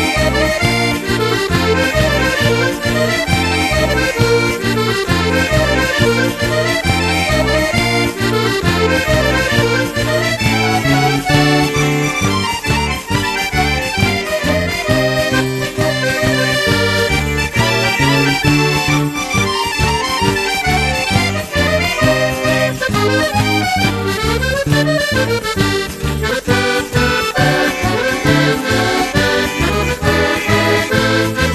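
A Calabrian tarantella played by a folk band led by accordion, with a steady bouncing bass line under a quick dance rhythm.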